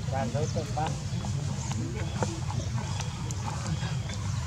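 A macaque's short, wavering squeal in the first second, followed by scattered light clicks over a steady low rumble in the background.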